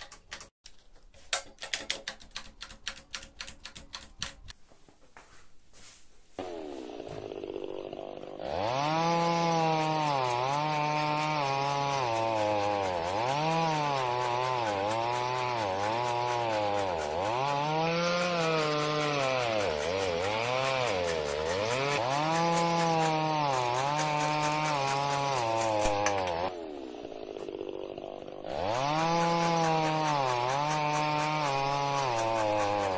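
Homemade chainsaw made from an old Druzhba chainsaw's bar and chain, sawing through a wooden beam, after a few seconds of handling clicks. It spins up, then its pitch sags and recovers over and over as the chain bites into the wood. It eases off briefly near the end, then cuts loudly again.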